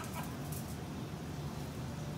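Restaurant kitchen background with a steady low hum, and a couple of brief light clinks in the first second as a metal ladle works thick sauce in a steel stockpot.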